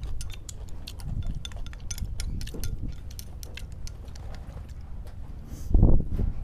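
Chopsticks clicking and tapping against porcelain rice bowls and plates during a meal, scattered light clicks over a steady low rumble, with a louder low thump near the end.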